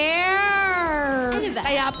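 A voice drawing out one long high sung note that rises and falls over about a second and a half, part of a singsong "I like you" chant, then breaks into shorter sung syllables near the end.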